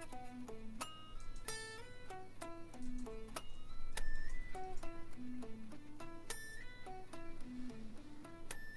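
Electric guitar playing a single-note lick of quick picked notes, with a slide up to a high note in each pass, played through twice. The second pass is the same lick with one interval moved down a half step, turning it from a major-third to a minor-third feel.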